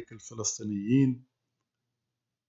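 A man's voice speaking for just over a second, then dead silence.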